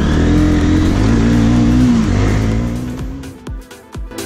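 A motorcycle engine running under the rider, its pitch dipping briefly in the middle and then fading out about three seconds in. Electronic dance music with a steady kick drum comes in near the end.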